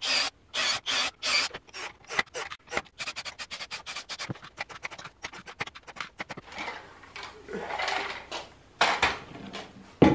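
Cordless drill driving screws through swivel-caster mounting plates into a pine frame, in short scraping bursts, followed by a quick run of small clicks and rubbing as the parts are handled.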